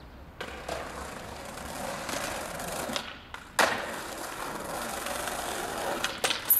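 Skateboard wheels rolling over paving, with one sharp, loud clack of the board about three and a half seconds in.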